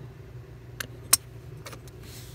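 Hard plastic Gilmark toy rocket being handled, giving three short, sharp plastic clicks, the loudest about a second in, over a steady low hum.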